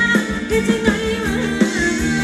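Thai ramwong dance music played by a live band: a singer's gliding melody over the band with a steady beat.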